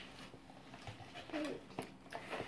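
Quiet room with a few faint clicks and taps from handling a plastic sweet box, and a brief soft hum of a voice about one and a half seconds in.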